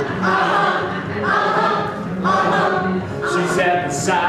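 Several voices singing a song together in phrases about a second long.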